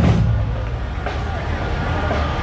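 A vehicle engine running low and steady under people's voices, as a drum beat ends right at the start.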